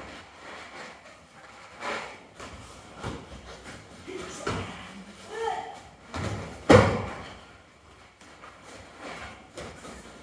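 Bodies landing on interlocking foam mats as aikido throws are taken, with thuds and footfalls on the mat. The loudest landing comes about two-thirds of the way through and rings briefly in the hall.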